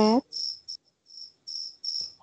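Cricket chirping in short, high pulses, about three a second.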